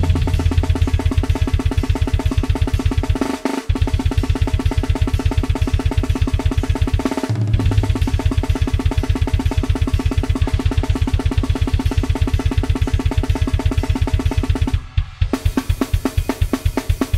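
Programmed grindcore drum kit played from Superior Drummer samples at 250 bpm: very fast, continuous blast-beat strikes of bass drum and snare with cymbals. It is broken by three short breaks: a few seconds in, about halfway, and near the end.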